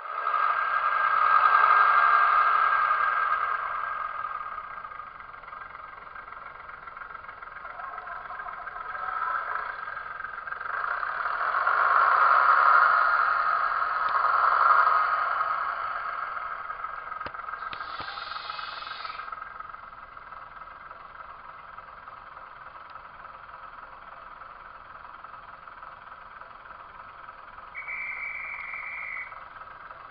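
Diesel engine sound from a model diesel multiple unit's DCC sound decoder, played through its small onboard speaker. The engine note swells twice under throttle and then settles to a steady run, with a brief higher tone about 18 seconds in and another near the end.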